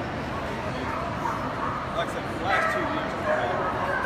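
A dog's short high calls over the steady chatter of a crowd, the loudest calls coming about two and a half seconds in and again near the end.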